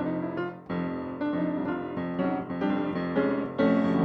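Solo jazz piano playing an instrumental fill of chords and melody notes between sung phrases, with no voice over it.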